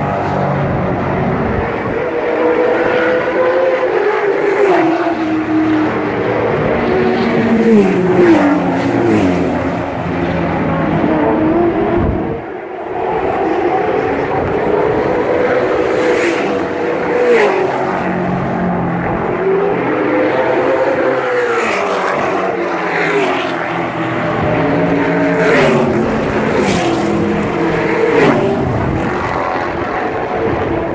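Racing car engines running hard, several cars in turn. The engine notes drop as they brake and shift down, then climb again as they accelerate away. The sound is loud and continuous.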